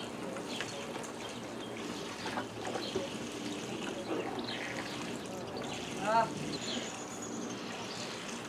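Water trickling and lapping in a backyard above-ground pool, with faint indistinct voices and a short pitched call about six seconds in.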